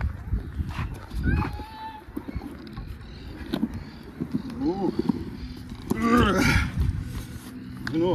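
Small plastic cruiser skateboard rolling on the concrete floor of a skate bowl, an uneven low rumble with scattered sharp clicks from the wheels and board. Short bursts of voices come in about five seconds in and again around six to seven seconds in.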